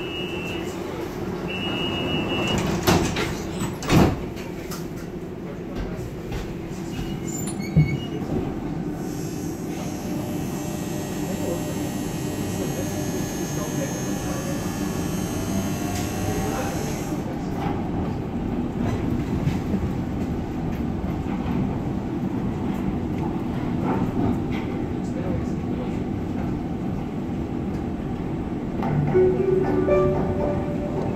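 Door warning beeps, two short high tones, then the sliding door of a Düsseldorf SkyTrain (H-Bahn) suspended monorail car closing with a knock about four seconds in. The car then pulls away and runs along its track with a steady rumble, a drive whine sounding for a while and then fading.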